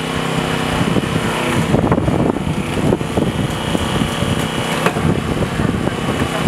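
Small petrol engine of a hydraulic rescue-tool power pack running steadily, its note turning rough and uneven for a few seconds in the middle as if under load, with a couple of sharp knocks.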